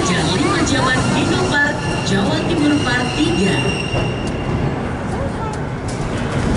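Amusement-park ride car rolling along its track: a steady rumble, with a thin high whine from about two to four seconds in and a few sharp clicks near the end.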